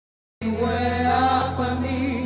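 Worship chant music. It cuts out to dead silence at the start, then comes back with a held sung note over a steady low drone.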